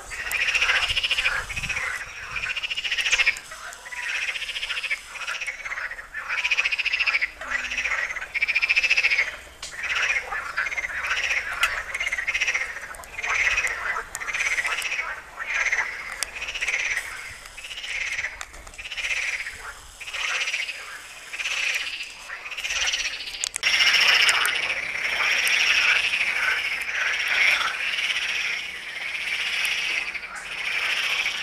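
A chorus of water frogs croaking, many overlapping calls pulsing about once or twice a second, growing louder near the end.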